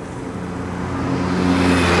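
A road vehicle's engine passing close by, a steady low hum under road noise that grows steadily louder.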